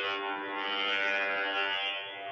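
A steady buzzing drone held at one pitch, from a recording whose playback has glitched: the audio is stuck on a single tone instead of the voice.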